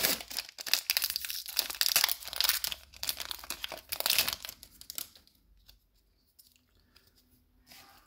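Foil wrapper of a Magic: The Gathering collector booster pack being torn open and crinkled by hand, a dense crackling that stops about five seconds in.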